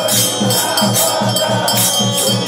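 Devotional temple music: drums beating a quick steady rhythm, about three to four strokes a second, under continuous jingling percussion and bells, accompanying the aarti lamp-waving.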